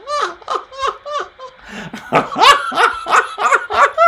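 A man laughing hard in a run of short pulses, about three a second, growing louder about halfway through.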